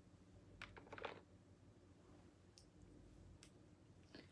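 Near silence: room tone with a few faint, short clicks, a small cluster of them about a second in.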